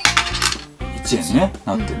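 A coin dropping through the slot of an electronic coin-counting piggy bank (the Kamen Rider Den-O "Chokin-ing" Momotaros Imagin bank), a sharp metallic clink right at the start, over background music, with a short voice calling out about a second in.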